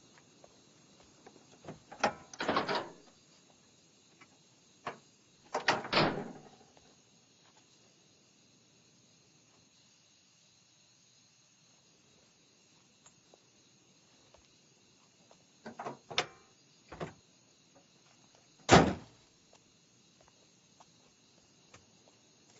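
A car bonnet being unlatched and lifted, with clunks a couple of seconds in and again around six seconds, then a few light knocks and clicks from the engine bay. A single sharp slam of the bonnet being shut near the end is the loudest sound.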